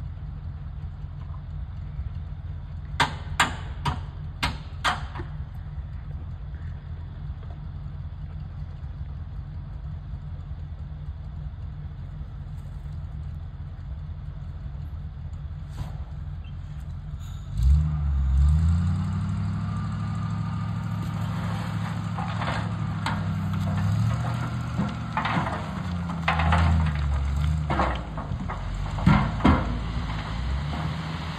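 GMC 7000 dump truck's engine idling, with a few sharp clicks about three to five seconds in. Just past halfway the engine revs up and holds a higher, steady speed as it drives the hoist raising the loaded bed, and through the last several seconds the load slides out with scattered knocks and rattles.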